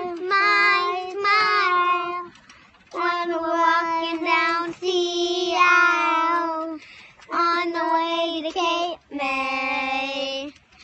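A child singing a simple tune in long held notes, in five phrases with short breaths between them; the last phrase drops lower in pitch.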